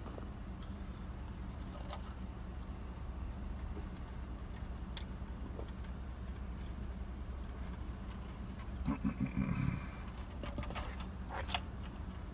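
Car engine idling, a steady low hum heard from inside the cabin. A brief low rumble comes about nine seconds in, and a couple of faint clicks near the end.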